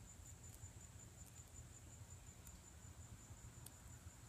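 Faint, steady, high-pitched insect trill, with a few faint ticks over it.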